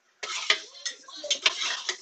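A metal spatula scrapes across a hot flat-top griddle, tossing shrimp and clinking sharply against the steel several times. It starts about a quarter of a second in.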